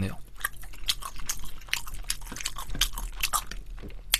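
A person chewing crispy sauced fried chicken (yangnyeom chicken) close to the microphone: irregular crunching and wet mouth clicks.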